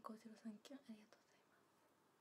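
A woman speaking quietly for about the first second, then near silence: room tone.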